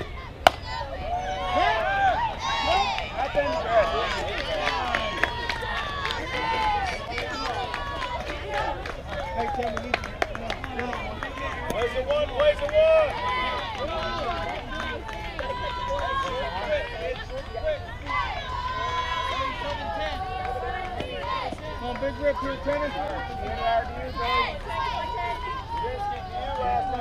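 A single sharp smack of the softball at the plate about half a second in, then many voices shouting and cheering over one another, mostly high-pitched, for the rest of the time.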